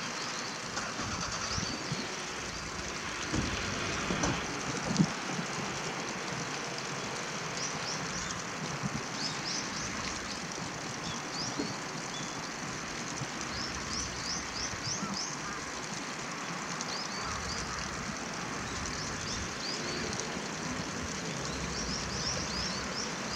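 Small birds chirping: many short, high chirps, often in quick runs, over a steady background hiss. A single brief knock comes about five seconds in.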